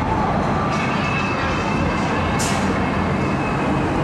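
Wind and road noise in an open-top convertible on the move, a steady loud rush with wind on the microphone. A faint high tone holds through the middle seconds.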